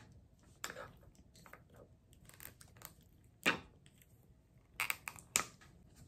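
A small package being opened by hand: faint rustling and crinkling of the wrapping, broken by a few sharp clicks, the loudest about three and a half seconds in and two more near the end.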